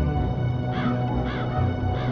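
A crow cawing twice, about half a second apart, over sustained background music.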